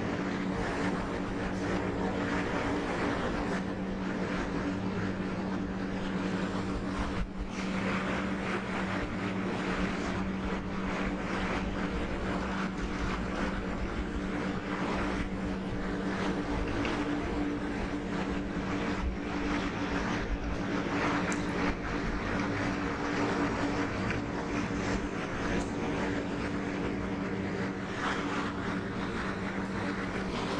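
A steady mechanical hum with a low drone, unchanging throughout, with a few faint short scratches over it.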